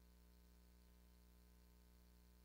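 Near silence: a faint steady low hum with no other sound.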